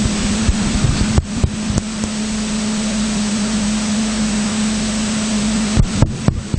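A steady, loud hiss with a low hum underneath, broken by a few short clicks.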